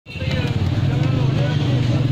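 A steady low engine drone with people talking over it.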